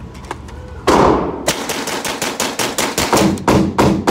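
A suppressed FGC9 9mm carbine firing: one shot about a second in, another half a second later, then a rapid string of shots at about five a second.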